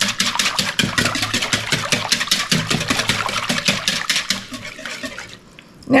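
Wire whisk beating a thin, liquid yeast-and-egg mixture in a wooden bowl: rapid, even strokes of wet splashing and wire against wood. The strokes stop a little after five seconds in.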